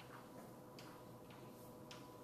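Faint chalk strokes on a blackboard: about four short, sharp ticks spread through a near-silent stretch, over a steady low room hum.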